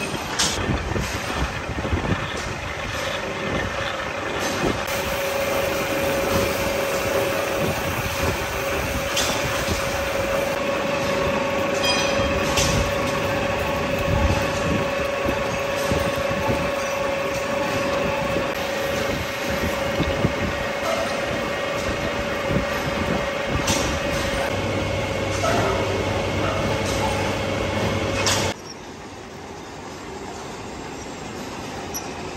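Large twist drill on a drill press boring into a solid steel billet: a continuous metal-cutting noise with a steady squeal and scattered clicks of chips. The noise drops off sharply near the end.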